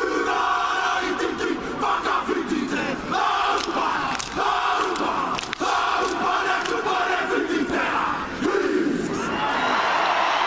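Rugby team performing the haka, a Māori war chant: many men shouting the words in unison in short, forceful phrases, punctuated by sharp slaps of hands on thighs and chests. The chant ends about nine and a half seconds in and the stadium crowd breaks into cheering.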